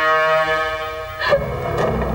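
Dramatic background score: a sustained brass chord held steady, breaking off about a second in with a sudden accent that gives way to a rougher, lower-pitched sound.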